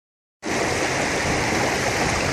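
Shallow stream water rushing steadily through a metal sluice box and over the rocks around it, starting just under half a second in.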